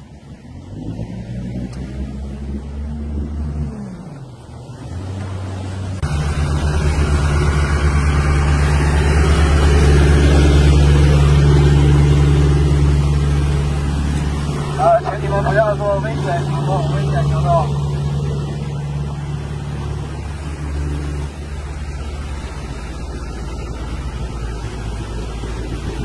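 Engines of small rigid inflatable patrol boats running at speed over open water, mixed with wind and spray. The engine pitch climbs over the first few seconds, is loud and steady from about six seconds in, and eases after about twenty seconds.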